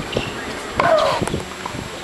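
A few sharp pops of tennis balls struck by rackets, and about a second in a female tennis player's drawn-out shriek on a stroke, falling in pitch.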